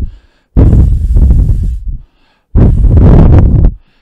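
Breath blown straight onto a bare Rode NTG5 shotgun microphone with no windscreen, giving loud, rumbling wind noise in two long puffs of about a second each, after the tail of a first puff that ends just at the start. Unshielded, the capsule is hit hard by the air, which shows why a windscreen is needed.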